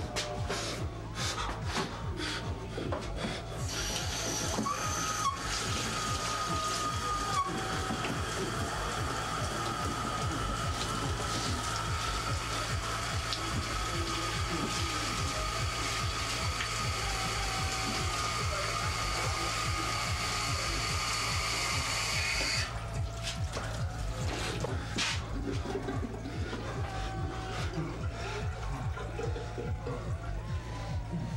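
Water running hard from a tap into a sink for about twenty seconds, then cut off suddenly, over a low droning film score.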